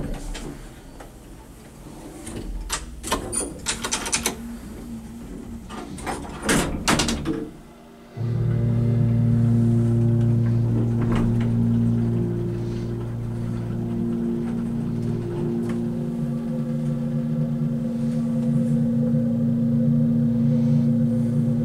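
A run of clunks and knocks from the elevator car and its doors, then about eight seconds in the hydraulic elevator's pump motor starts abruptly and runs with a steady hum: a low drone with a higher tone above it. The uploader believes the motor is a later replacement rather than the original Montgomery unit.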